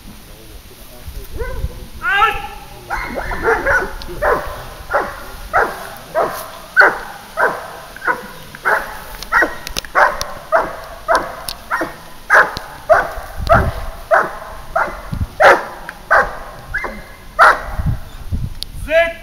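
German Shepherd dog barking steadily and loudly at the protection helper, about two barks a second, after one higher rising yelp about two seconds in.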